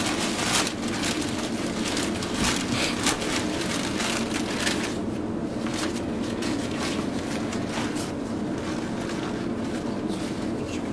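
Paper wrapping rustling and crinkling as it is pulled off a block of raw tuna. The crackling is densest in the first half and thins out later, over a steady low hum.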